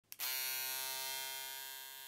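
A click, then electric hair clippers buzzing with a steady hum that slowly fades.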